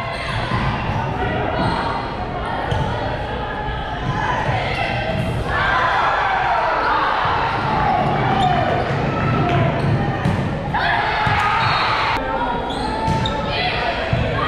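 Indoor volleyball game in a large, echoing gym: the ball being struck and hitting the hardwood floor amid players' and spectators' voices, which grow louder about five and again about eleven seconds in.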